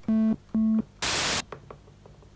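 Roland JD-Xi synthesizer playing two short single notes of the same low pitch with a plain, fairly mellow tone, then a short burst of hiss about a second in, as the oscillator's waveform setting is stepped between notes.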